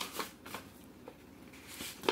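A sheet of construction paper rustling and crackling as it is bent and folded by hand, with a few short crackles, most of them in the first half second, then faint handling.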